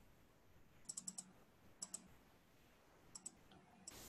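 Faint clicking at a computer: three short clusters of quick clicks, about one, two and three seconds in.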